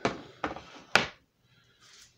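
Three sharp clacks of hard plastic comic book grading slabs being handled and knocked against a desk, about half a second apart, the last the loudest.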